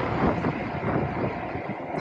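Wind buffeting the microphone on an open ship deck, a continuous rumbling noise with a steady low hum beneath it.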